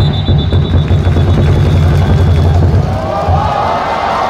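Cheer music played over stadium loudspeakers, with a heavy low bass for about three seconds and a steady high tone over it. Near the end, a crowd of voices comes in over the music.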